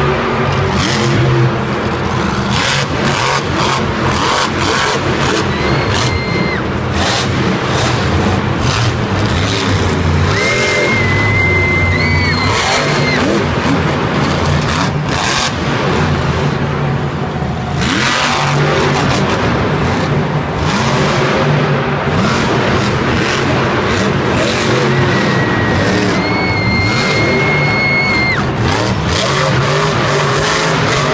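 Monster truck's supercharged big-block V8 revving up and down again and again through a freestyle run, loud throughout and echoing around a stadium.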